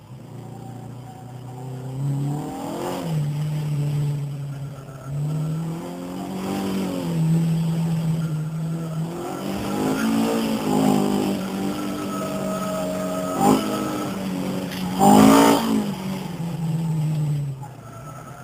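Alfa Romeo Giulia Super's newly rebuilt four-cylinder twin-cam racing engine, heard from inside the cabin, revving up and dropping back over and over with gear changes. A short loud burst of noise comes about three-quarters of the way through.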